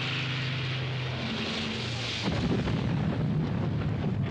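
Single-engine propeller plane passing overhead with a steady engine drone. Just after two seconds in, the drone gives way to a deep, continuous rumble of bombs exploding.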